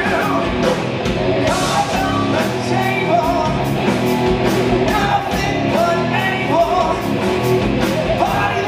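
Live hard rock band playing: distorted electric guitars, bass guitar and a drum kit with a steady beat and cymbal hits.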